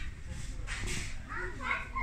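A short rustle just before the one-second mark, then indistinct voices that start about a second and a half in.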